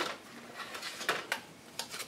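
Card stock being handled and set down on a craft mat: a few brief soft taps and rustles of paper.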